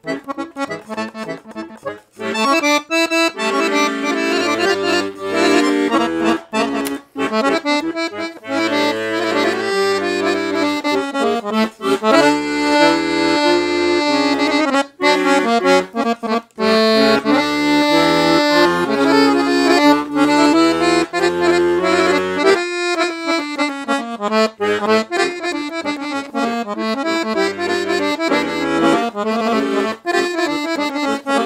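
Titano Special 7113 piano accordion, an Italian instrument with three-voice LMH reeds in octave tuning, being played. A melody runs on the treble keys, and a bass-button accompaniment joins a few seconds in. The playing stops briefly a little over two-thirds of the way through, then carries on.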